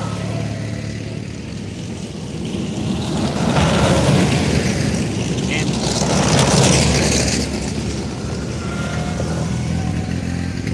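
Small open tracked vehicle driving past on a dirt track: the engine runs steadily under the clatter of tracks and running gear. It grows louder as it passes close, about four to seven seconds in, then fades.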